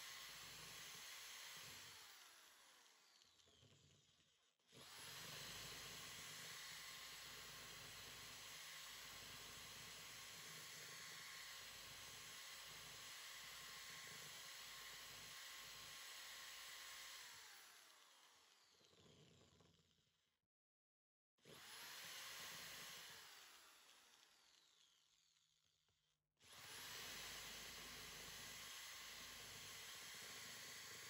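Cordless drill faintly whirring as it drills out the rivets of a plastic-cased circuit breaker, running in several stretches that each start abruptly and end in a falling whine as the motor winds down.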